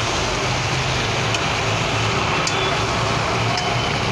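Potatoes, pointed gourd and prawns frying in masala in a kadai, with a steady sizzling hiss, a low steady hum beneath it and a few light spatula clicks against the pan.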